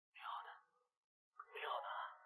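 Only speech: a man speaking quietly in Mandarin, two short phrases about a second apart.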